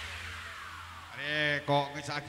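The tail of electronic-style dance music dies away with a long falling tone, and about a second in a man starts speaking.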